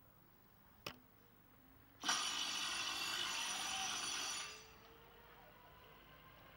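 Greyhound track's electric bell ringing loud and steady for about two and a half seconds, starting abruptly about two seconds in and fading out; at a greyhound track this bell signals that the hare is running, shortly before the traps open. A single sharp click comes about a second in.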